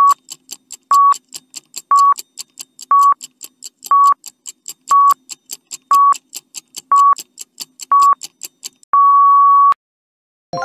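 Quiz countdown-timer sound effect: a short electronic beep once a second with rapid high ticking between the beeps. It ends in one longer beep about nine seconds in, marking time up.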